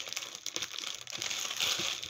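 Crinkling of a bagged mail package as hands pick it up and handle it, a dense run of small crackles that grows louder in the second half.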